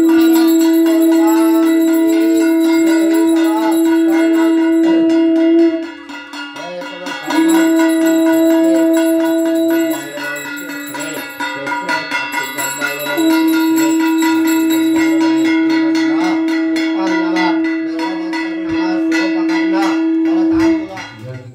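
Conch shell blown in three long, steady blasts with short breaks for breath, over a small hand bell rung fast and without pause, as at the aarti of a Hindu puja.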